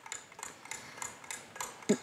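Countdown clock sound effect ticking steadily and faintly, about four ticks a second, as a timer runs down.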